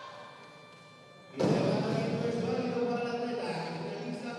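A loaded barbell dropped onto the weightlifting platform with a sudden heavy thud about a second and a half in, after a completed lift. Music and voices in the hall follow it.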